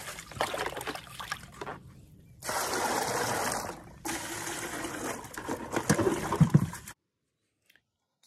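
Black plastic flower buckets being scrubbed out with a hand brush: brush scraping and water sloshing, then a rush of water tipped out of a bucket for about a second and a half. More scrubbing and splashing follows, with a few louder knocks, and the sound cuts off suddenly a second before the end.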